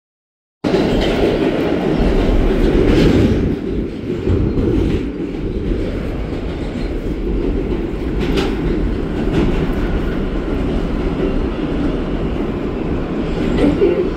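R160 New York City subway car running through a tunnel: a steady low rumble of wheels on rail, with a few sharp clacks of the wheels along the way. The sound cuts in just under a second in.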